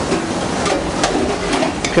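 Lamb mince with pancetta and vegetables sizzling in a hot pan just after full-fat milk has been poured in: a steady hiss, broken by a few light clicks.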